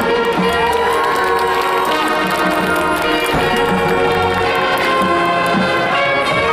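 A marching band's brass and winds, backed by front-ensemble percussion, playing loud held chords, with cheering from the crowd rising over it early on.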